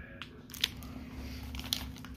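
Plastic soft-bait packet crinkling and crackling as it is handled, with a few sharp clicks.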